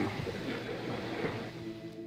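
Quiet background music under the steady hiss and hum of an old television archive recording, its sustained tones growing clearer near the end.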